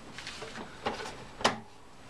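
Handling noises from a thermal copier and its paper: a few soft knocks and rustles, the loudest about one and a half seconds in.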